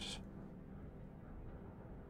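A faint, steady low hum of background room tone, with the tail of a whispered word fading out at the very start.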